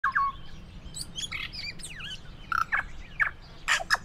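Birds chirping: a run of short whistled notes and quick rising and falling sweeps, several calls overlapping, with the loudest calls near the start and in the last second.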